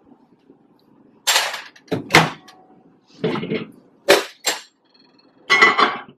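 Ceramic bowl and microwave being handled: a series of clunks and clatters as the microwave door is opened and the bowl is set down on the glass turntable, with a short faint high beep about five seconds in.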